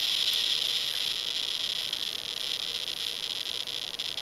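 CD V-700 Geiger counter clicking so fast that the clicks run together into a steady hiss. The hiss fades and thins into separate, sparser clicks from about halfway, as the count rate falls with distance from a person dosed with radioactive iodine-131.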